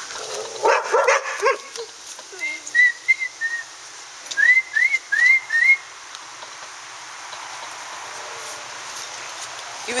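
A person whistling to call standard poodle puppies: four short level notes, then four quick rising whistles, from about two to six seconds in.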